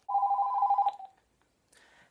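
Telephone ringing: a single warbling electronic ring just under a second long, fading out quickly.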